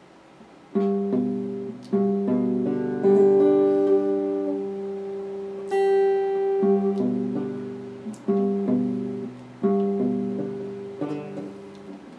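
Electric guitar with a clean tone, played slowly: chords and notes picked about every one to two seconds and left to ring and fade. It starts about a second in.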